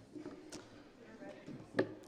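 Faint, indistinct voices of people talking and moving about in a hall, with scattered light knocks and one sharper knock near the end.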